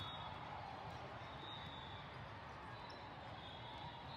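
Steady din of a large hall during indoor volleyball play: many distant voices blending together, with balls being hit and bounced on the courts.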